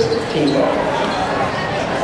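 A basketball bouncing on a hardwood gym floor, over crowd chatter and voices echoing in the gymnasium.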